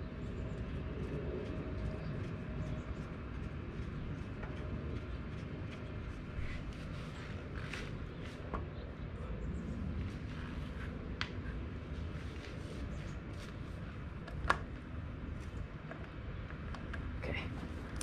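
Scattered light clicks and knocks of gloved hand work on a motorcycle's rear axle and chain adjuster, over a steady low hum, with one sharper click near the end.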